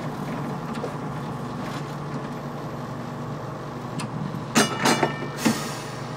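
Rail car running steadily along the track, with a quick series of four loud, ringing metallic strikes about four and a half to five and a half seconds in.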